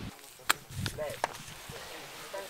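A few sharp knocks or clicks, the first and loudest about half a second in, over faint background voices.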